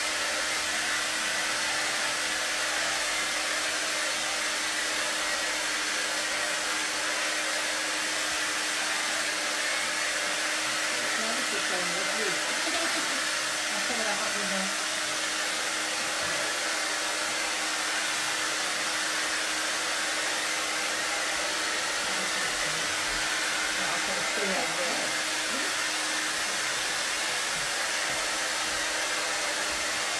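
Hair dryer blowing steadily to dry wet watercolour paint, a constant rush of air over an even motor hum.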